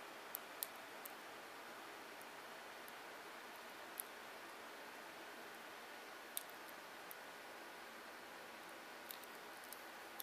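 Faint handling of small plastic action-figure parts, with a few scattered sharp clicks as a sword piece is worked onto a peg in the figure's back, over a steady low hiss.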